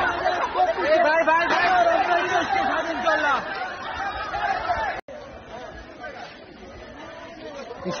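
Several men's voices shouting and talking over one another. The voices are loud for about five seconds, then cut off abruptly and come back quieter.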